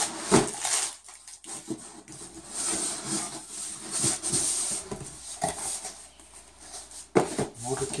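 Cardboard boxes being handled and rummaged through: irregular rustling and scraping of cardboard, with a couple of sharp knocks just after the start and about seven seconds in.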